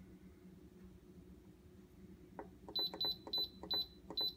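Instant Pot Duo control panel beeping as its minus button is pressed repeatedly to step the pressure-cook timer down: about four short high beeps, each with a click of the button, coming roughly three a second, starting near the end after a faint steady hum.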